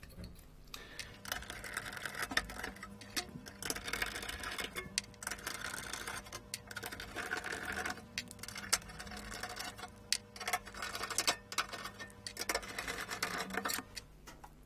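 Irregular clicks, taps and clatter of hands handling a metal equipment chassis and its loose parts on a workbench, over a faint steady low hum.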